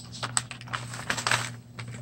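Tissue paper rustling and crinkling, with small irregular clicks and taps, as a bundle of stickers and paper pieces is pulled out of a tissue-paper envelope.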